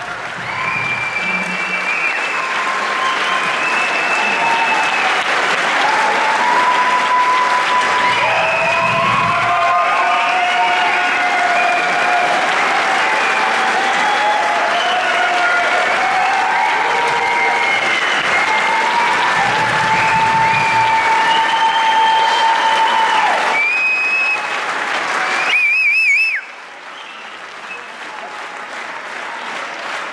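Concert audience applauding steadily, with whistles and sliding calls from the crowd over the clapping. Just after a trilling whistle a few seconds before the end, the applause drops off sharply, then builds again.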